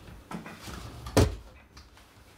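Footsteps in soft slippers on a wooden floor, with a single loud knock a little over a second in.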